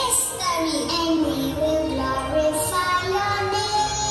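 A children's song: children's voices singing a melody over backing music.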